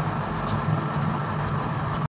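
Steady low background hum and rumble, with the faint scratch of a felt-tip marker writing on paper.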